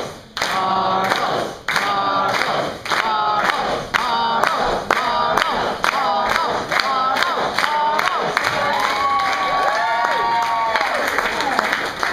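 A performer's voice making wordless sing-song vocal sounds in short phrases with brief gaps, then longer arching held notes about three-quarters of the way through.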